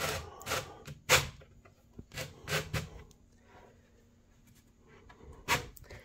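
A few light knocks and rubs from handling the laminated particleboard panels of a flat-pack bookcase: one knock about a second in, three close together a little later, one more near the end, and quiet stretches between.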